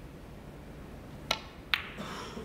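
Snooker shot: a sharp click of the cue tip striking the cue ball, then about half a second later a louder click as the cue ball strikes the yellow ball.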